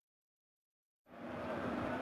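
Dead silence for about the first second, where the highlights edit cuts in, then the steady background noise of a televised football match fades up: stadium crowd and ambience from the broadcast sound.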